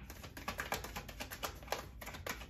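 A deck of tarot cards being shuffled by hand: a quick, irregular run of light card clicks.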